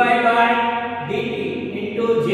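A man's voice speaking in long, drawn-out tones with held vowels, close to a chant.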